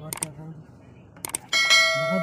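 YouTube subscribe-button animation sound effect: two quick mouse-click pairs, then a bell ding about one and a half seconds in that rings on.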